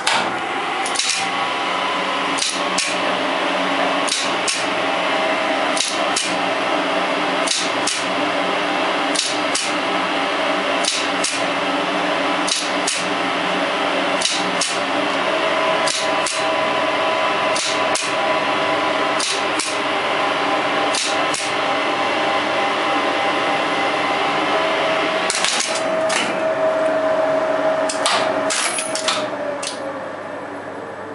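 Motor-room sound of a 1970s Express Lifts two-speed lift on a run down to the ground floor: the lift machine runs with a loud, steady hum, and the relay controller and floor selector click, a pair of clicks about every second and a half. Near the end comes a cluster of relay clicks as the car slows and stops, and the hum falls away with a falling tone.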